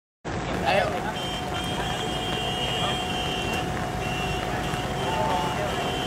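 Steady low rumble of vehicle engine noise with a faint steady whine. A man gives a brief exclamation about a second in.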